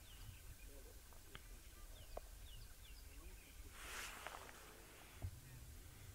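Near silence: quiet bush ambience with a faint run of short, falling bird chirps in the first half, a few faint clicks, and a brief rustle about four seconds in.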